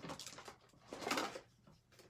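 Paper and crafting supplies being handled on a tabletop: two short rustling, scraping noises, one at the start and one about a second in.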